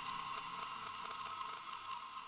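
Faint fading tail of an intro sound: several steady ringing tones over a light hiss, slowly dying away.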